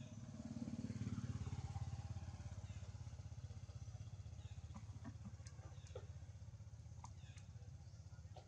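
A motor vehicle engine running at a distance: a low steady drone that grows louder about a second in and then slowly fades. A few faint short sharp sounds come in the second half.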